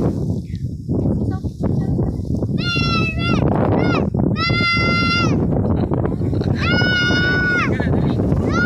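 A young child squealing in three long, very high-pitched cries, each rising, holding steady and then falling away. Wind rumbles on the microphone underneath.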